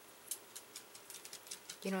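Soft air-dry clay being pinched and pulled off a mold between fingers: a string of small, irregular, sticky clicks. A woman's voice begins just before the end.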